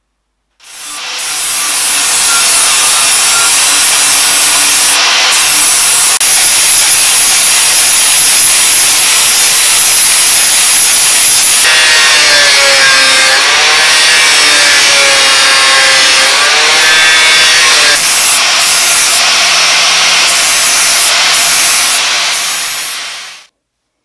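Angle grinder with an abrasive cut-off disc cutting through a chrome-plated steel bar: a loud, steady whine with a grinding hiss. The pitch wavers under load about halfway through, and the sound stops suddenly near the end.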